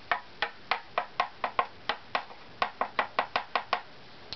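Quick light taps of a small tool on a carved violin back plate, about five a second, each a short knock with a brief ring whose pitch shifts a little as the taps move across the plate. This is tap-tone testing of the plate to find the spot that is still too high or stiff and needs scraping down.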